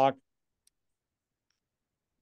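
A man's voice finishes a word, then near silence with one faint click a little under a second in.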